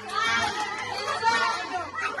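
A group of people shouting and cheering excitedly, many voices overlapping.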